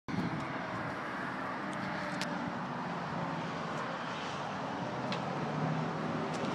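Ford F-350's 7.3-litre Power Stroke turbo-diesel V8 idling steadily, with a couple of faint clicks.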